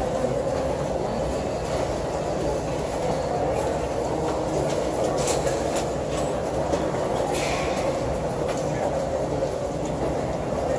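Heavy rain pouring down in a steady rush.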